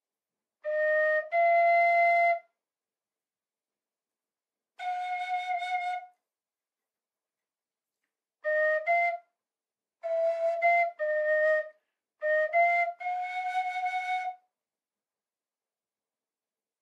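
A Carbony carbon-fibre tin whistle in A-flat with two thumbholes, played in five short bursts of one to several notes with silent gaps between, as half-holed and thumbhole notes are tried out. Some notes go up weird because the bottom thumbhole is being uncovered at the same time.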